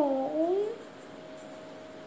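A short drawn-out vocal sound in the first second, dipping and then rising in pitch, like a meow or a hummed 'mm'.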